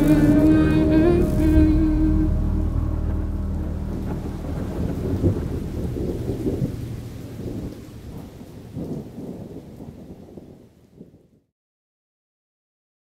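Rain and thunder sound effects, with a musical chord ending about two seconds in. The rumble swells about five seconds in, then fades out steadily into silence shortly before the end.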